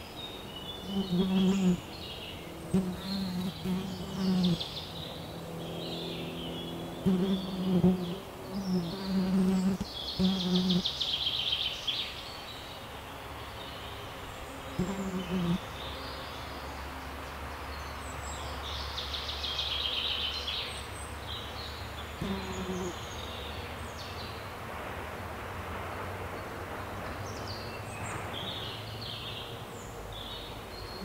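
Forest ambience: a flying insect buzzes close by in repeated short bursts, most of them in the first half, while songbirds chirp and sing throughout, with longer song phrases about a third and two-thirds of the way in.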